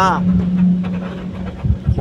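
Vehicle engine running at idle: a steady low hum with rumble beneath it, and a few low thumps near the end.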